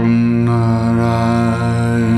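Devotional kirtan chant: a deep male voice holds one long sung note over a sustained low drone, bending down in pitch near the end.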